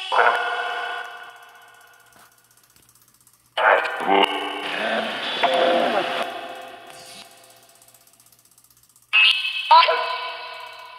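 Necrophonic ghost-box app output: chopped sound-bank fragments passed through echo and reverb, coming in three sudden bursts that each ring and fade away slowly. The bursts come at the start, from about three and a half seconds in for a few seconds, and again near the end.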